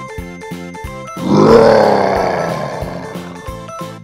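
Children's background music with a steady beat, and about a second in a loud bear roar that falls in pitch and fades out over about two seconds.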